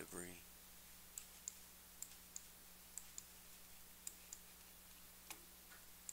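Computer mouse button clicked about once a second, each click a quick double tick of press and release, as the photos are paged through.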